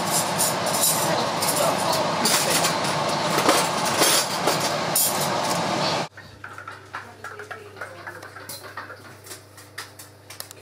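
Aluminium foil crinkling and crackling under a hand, loud and full of sharp clicks, stopping abruptly about six seconds in. After that there is only a quiet room with a low steady hum and faint small knocks.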